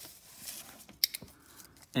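Desk handling sounds: a soft brushing as a paper notepad is slid into place, then a sharp click with two lighter ticks about a second in.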